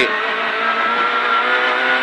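Renault Clio Super 1600 rally car's naturally aspirated four-cylinder engine pulling under acceleration, heard from inside the cabin. It makes a steady, even note whose pitch climbs slowly.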